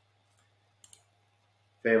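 Two quick clicks of a computer mouse button, a tenth of a second apart, about a second in, against near silence with a faint hum.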